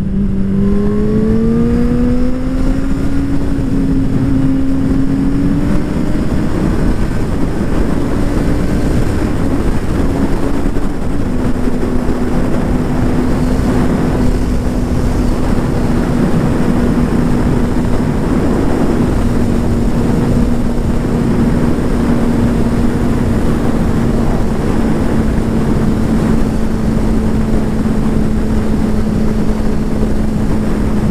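Suzuki GSR600 naked bike's inline-four engine running at road speed, heard from the rider's position with wind rushing over the microphone. The engine note climbs over the first few seconds as the bike accelerates, holds, dips a little about eleven seconds in, then stays steady as it cruises.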